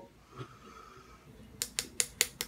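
A quick run of light clicks near the end as a straight razor with plastic scales is handled in the fingers.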